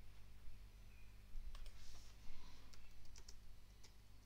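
Faint clicks of a computer mouse and keyboard keys: a handful of short, sharp ticks spread over a few seconds, over a steady low hum.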